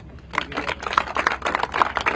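A small crowd applauding, heard as a dense, irregular patter of distinct individual hand claps.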